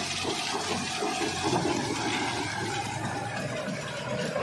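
John Deere 5210 tractor working in deep paddy-field mud: its tyres and rotavator churn wet mud in a steady, noisy rush, with the engine running underneath.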